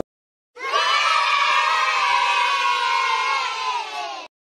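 A group of children cheering together in one long shout. It starts about half a second in and sags slightly in pitch toward the end. It is a sound effect laid over an animated end card.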